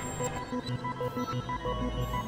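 Experimental electronic synthesizer music: short, rapidly repeating beeping notes over a low, shifting bass that swells in the second half.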